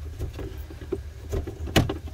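Short clicks and knocks of plastic water-pipe fittings being worked loose by hand at an RV's Nautilus valve manifold, over a steady low hum. The sharpest knock comes near the end.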